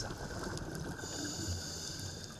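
Steady rushing water noise, as heard underwater among a school of salmon, with a faint high whine joining about a second in.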